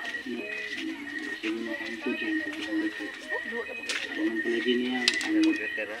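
A voice talking through a tablet's small speaker, thin with no low end, over a steady high whine.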